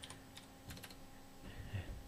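Faint clicking of computer keyboard keys being pressed, a handful of light taps mostly in the first second.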